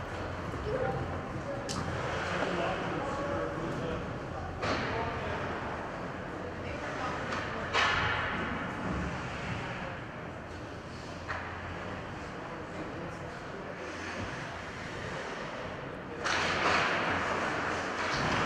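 Ice rink ambience during a stoppage in play: indistinct voices echoing in a large arena and a few sharp clacks about every three seconds. A louder rush of noise starts about two seconds before the end.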